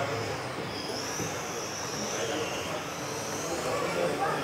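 Radio-controlled cars racing on an indoor track, their motors making a high whine that rises and falls in pitch as they speed up and slow down through the corners.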